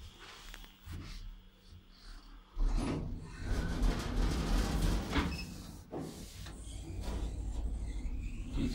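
Sliding doors of a hydraulic passenger lift moving, starting with a sudden thump about two and a half seconds in and going on with an uneven rumbling clatter.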